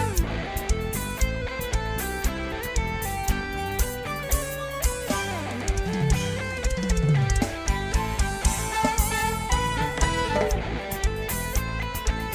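Live band playing an instrumental passage: electric guitar lines over a steady drum-kit beat and bass.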